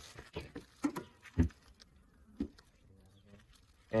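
A car's hood being released and lifted: a few separate clicks and knocks, with one sharp clunk about a second and a half in.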